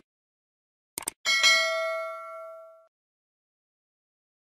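Two quick sharp clicks about a second in, then a single bright bell ding that rings out and fades over about a second and a half: a subscribe-and-notification-bell sound effect.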